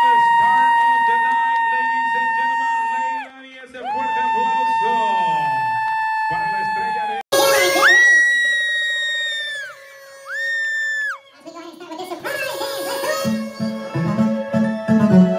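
Music: long held high notes of about three seconds each, broken off suddenly about seven seconds in, with a different piece carrying a steady beat starting near the end.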